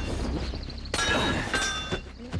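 Cartoon sword-fight sound effects: metal blades clashing, with ringing clangs about a second in and again about half a second later.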